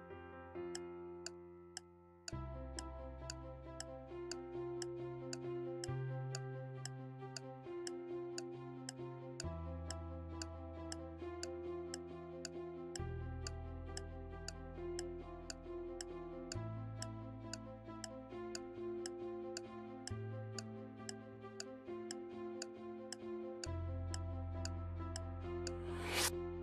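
Quiz countdown-timer ticks, about two a second, over background music with held chords and a bass line that steps every few seconds. The music dips about two seconds in and then restarts, and a brief sharp sound effect comes right at the end.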